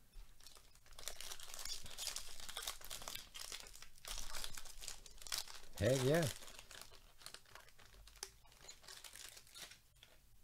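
Foil wrapper of a Topps jumbo pack of baseball cards being torn open and crinkled by gloved hands. The crackly rustling starts about a second in, is loudest around four seconds, then thins out as the cards are pulled free.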